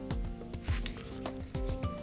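Background music of held notes, with two brief soft rubbing sounds, a little under a second in and again near the end.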